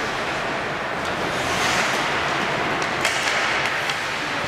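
Ice hockey rink ambience: a steady wash of noise from skates on the ice and the arena, with a swelling scrape about halfway through and a sharp knock about three seconds in.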